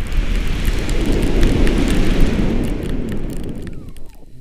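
Wind buffeting the camera's microphone during a tandem paraglider flight: a loud, deep rush of air that builds, peaks about halfway through, then eases.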